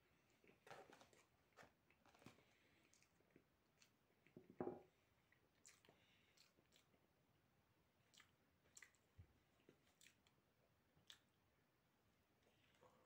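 Faint chewing and small mouth clicks of a person eating a dry slice of medovik honey cake with dried prunes in it, with one louder brief mouth noise about four and a half seconds in.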